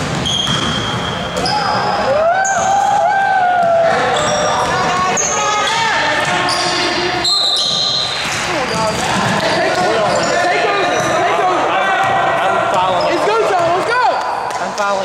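Basketball game in a reverberant gym: the ball bouncing on the hardwood, short sneaker squeaks, and players shouting to each other.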